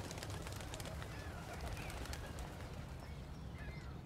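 Outdoor park ambience: faint bird chirps over a steady low background rumble.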